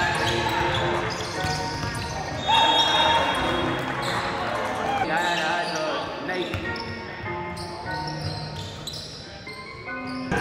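A basketball dribbled on a gym floor, with voices and music mixed in behind it.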